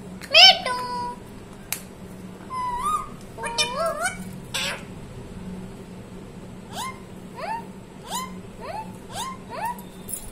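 Rose-ringed (Indian ringneck) parakeet calling. A loud call comes about half a second in, then a cluster of calls ending in a harsh screech, then a run of about six short rising calls in the second half.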